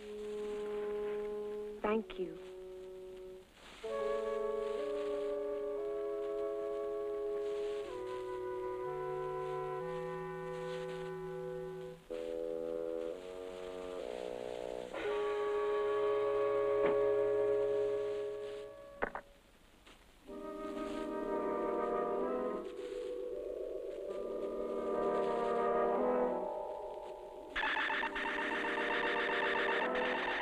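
Film score music of held chords that change every second or so, with short breaks between phrases. In the last couple of seconds a denser, fast-fluttering sound comes in.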